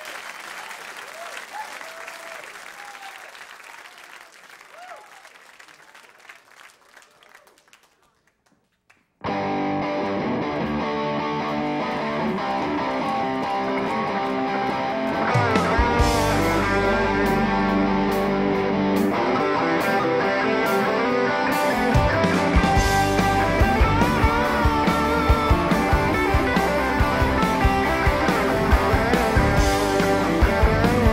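Audience applause fading away over the first several seconds, then, after a brief near-silent gap, a rock band starts a song abruptly with electric guitars. About six seconds later drums and bass come in and the full band plays on.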